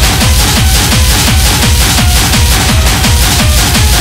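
Loud Schranz (hard techno) track: a fast, steady kick drum, each hit falling in pitch, under dense, driving percussion and hi-hats.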